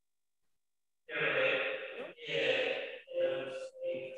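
Three breathy, hissing bursts of about a second each over a video-call audio link, starting about a second in after dead silence, with a steady hum under them. This is garbled audio from a remote participant's microphone while the connection is faulty.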